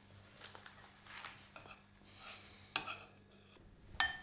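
A metal spoon clinking and scraping faintly against a ceramic bowl as someone eats, with a sharper clink about three-quarters of the way through.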